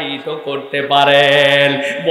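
A male preacher's voice chanting through microphones: a short shifting phrase, then one long note held on a steady pitch from about a second in until near the end.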